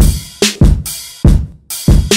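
Drum samples played from the pads of an Akai MPC Touch: about five separate drum hits in an uneven rhythm, each fading out quickly before the next.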